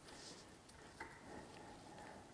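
Near silence: faint rubbing of fingers twisting poly yarn, with one small tick about halfway through.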